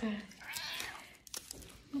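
A grey British Shorthair cat gives one short meow about half a second in, while being offered a treat.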